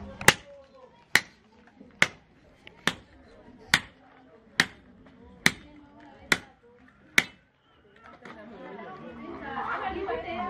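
A machete chopping raw meat on the ground: nine sharp, evenly paced strikes a little under a second apart, which stop about three-quarters of the way through. People chatter near the end.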